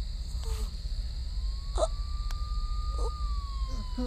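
Three short, pained gasps from an injured person lying on the road, over a steady high chirring of crickets and a low rumble. From about a second in, a faint long tone slowly rises and then falls, like a distant siren.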